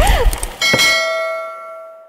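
A notification bell chime sound effect: a single bell-like ding strikes about half a second in, with several high ringing overtones, and fades away slowly until it cuts off at the end.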